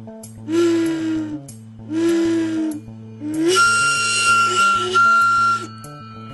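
An orange fish-shaped souvenir whistle blown three times: two short, breathy, low-pitched toots, then a longer blow that settles into a steady high whistle.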